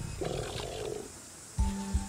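A crocodile growling for just under a second, followed near the end by a low held music note.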